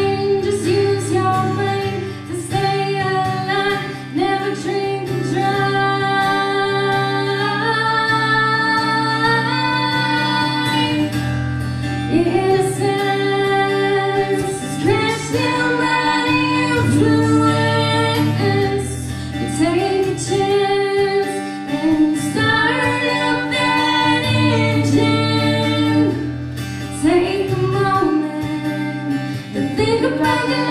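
A woman singing a country song live, accompanying herself on an acoustic guitar.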